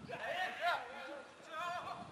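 Two short, faint shouted calls from voices on a football pitch.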